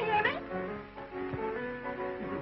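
A song: a voice swoops through a sung phrase at the start, then held notes sound over musical accompaniment.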